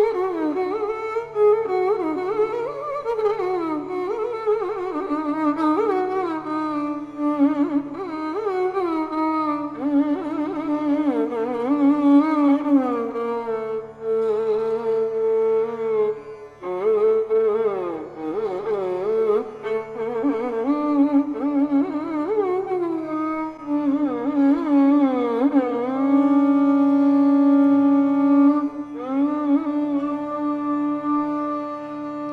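Carnatic violin playing a free-flowing raga passage with sliding, ornamented notes over a steady drone, without percussion. Near the end it settles into long held notes.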